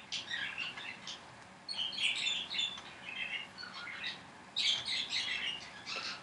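A bird chirping in four short bursts of twittering, with pauses between them.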